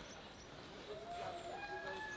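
Quiet outdoor ambience at an athletics track. From about a second in there are faint, thin tones, some gliding, that could be a distant voice or a bird.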